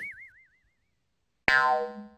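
Comedy sound effects: a wobbling boing fading out in the first half second, then, about one and a half seconds in, a sudden sharp twang with many overtones that dies away.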